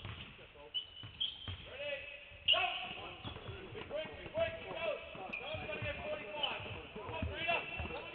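Several basketballs being dribbled at once on a hardwood court, an irregular overlapping patter of bounces from players doing low dribbling drills, with voices over it from about two and a half seconds in.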